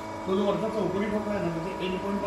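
A person talking, over a steady electrical hum with a high tone.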